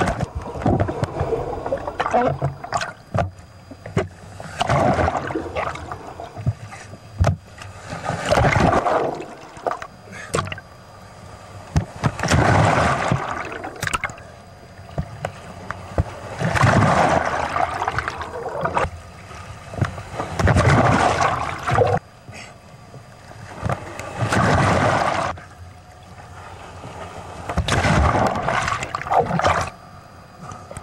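Seawater sloshing and rushing against a waterproof camera housing as it rides in the surf, coming in loud noisy surges about every four seconds with quieter stretches between.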